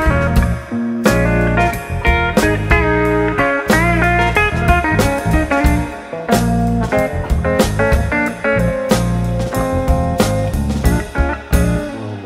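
Live band playing the closing instrumental passage of a song: a lead guitar solo with bending notes over drums and bass. The band strikes a last hit near the end and it rings out as the song finishes.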